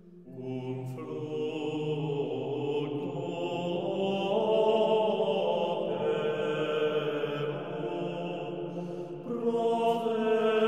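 Male voices singing twelfth-century Cistercian plainchant unaccompanied, in unison. The singing comes back in just after a short breath pause at the start, and pauses briefly again near the end before returning louder.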